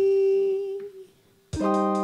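Live pop song: the electric keyboard and beat drop out, leaving a woman's held sung note that fades away about a second in. After a brief silence, the keyboard chords and beat come back in sharply.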